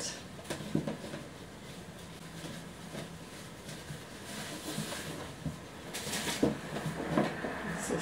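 Wrapping paper and ribbon rustling as a gift-wrapped shoe box is unwrapped, with a few light knocks of the cardboard box being handled. The rustling grows busier in the second half.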